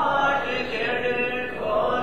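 A group of voices singing the college anthem together in unison, held sung lines that change note a couple of times.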